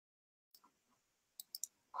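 Near silence: a dead audio feed, then faint hiss with three or four short, quiet clicks close together near the end.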